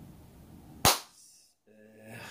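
A single sharp click or pop about a second in, much louder than the faint background and dying away quickly. A moment of dead silence follows, then a low steady room hum starts near the end.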